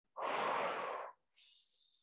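A woman's deliberately exaggerated breath, audible for about a second, followed near the end by a fainter, higher hiss of air.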